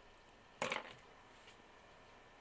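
A single short handling noise of craft supplies, a rustle or knock a little over half a second in, over quiet room tone.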